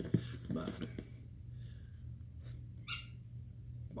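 A dog giving a faint whimper and then a short, high squeak about three seconds in, over a low steady room hum.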